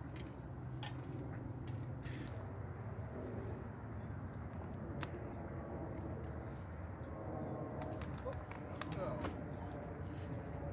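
Steady low rumble of distant freeway traffic, with a few sharp clicks scattered through it.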